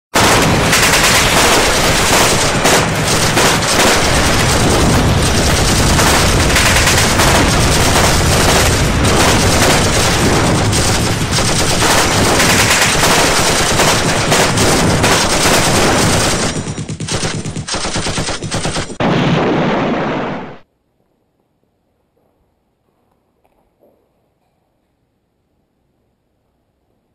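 Loud, continuous automatic gunfire with many rapid shots, breaking up after about sixteen seconds and cutting off suddenly a few seconds later.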